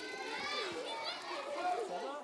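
Children's voices chattering and calling out as they play.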